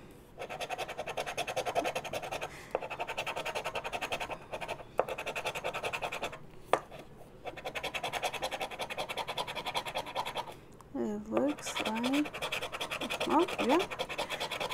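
Edge of a Spider-Man fidget spinner scratching the latex coating off a scratch-off lottery ticket: fast back-and-forth rubbing strokes, pausing briefly twice, with a single sharp click about halfway through.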